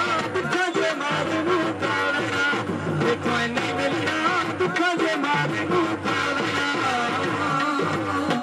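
Live Punjabi folk music (mahiye) played over a sound system: a melody over a steady percussion beat.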